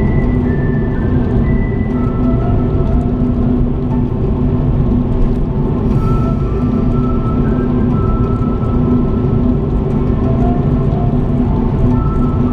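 A song with long held notes playing on the car stereo over the steady low rumble of the car driving on the road, heard from inside the cabin.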